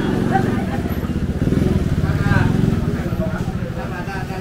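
A small motorcycle engine running close by, growing louder in the middle and easing off toward the end, with people's voices around it.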